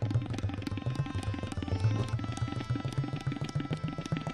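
Tabla played solo: a fast, dense run of strokes on the right-hand dayan over the deep bass of the left-hand bayan, whose pitch is bent up and down by the pressure of the left hand.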